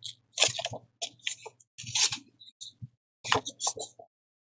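Sheets of old book paper rustling and crinkling in the hands, in a run of short, irregular crackles.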